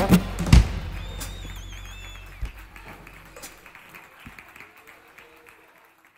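The final strummed chord of an acoustic guitar dies away, with two sharp thumps in the first second, then light scattered clapping and a brief wavering whistle. Everything fades steadily down to near silence.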